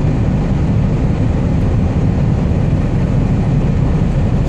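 Steady low drone of a Scania R440 truck's diesel engine and road noise, heard from inside the cab while cruising on the highway.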